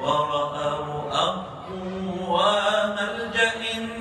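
A man singing an Arabic song into a handheld microphone, holding long notes that slide between pitches, with a short break about a second in.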